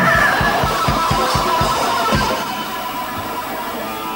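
Punk rock band playing live: electric guitar over fast drumming. The drums stop about two seconds in while the guitar carries on.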